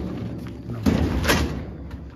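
A beehive box being handled and set down among other hive boxes while being loaded, knocking and thudding: two sharp knocks close together a little under a second in, each with a short rattling tail.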